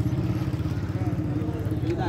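A nearby engine running steadily at idle, a low, even, fast-pulsing rumble.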